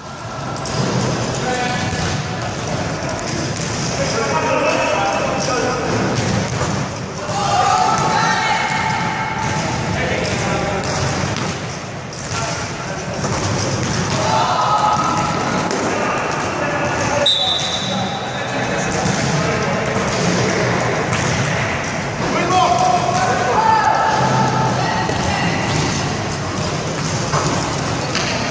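Basketball bouncing on a wooden sports-hall floor during play, under almost constant shouting from players and onlookers, all echoing in the large hall. A brief high whistle sounds about two-thirds of the way through.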